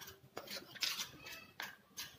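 Metal spoons clinking and scraping against each other as sticky halwa is scraped off one spoon with the other, in several short clicks.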